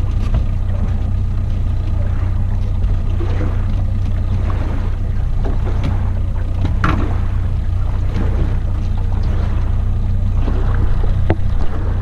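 Small outboard motor running steadily at low speed, a constant low hum carried through the aluminium boat. A few sharp knocks of gear in the boat, and louder rubbing handling noise near the end as a hand covers the camera.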